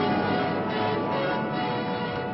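Film soundtrack with bells ringing, a run of strikes at changing pitches over a dense background of music.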